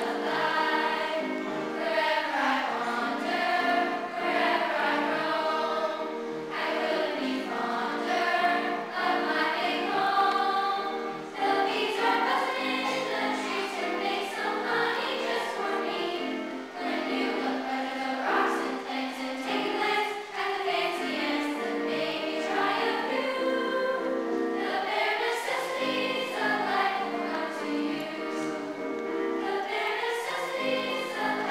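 A school choir of children singing together without a break, the notes moving continuously.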